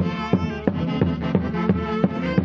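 Traditional Andean Santiago festival music: a sustained melody over a steady drum beat of about three strokes a second.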